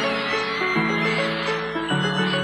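Live pop concert music, sustained chords that shift every second or so, with high-pitched screaming from the crowd over it.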